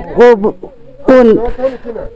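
A man speaking: short stretches of talk with a brief pause in the middle.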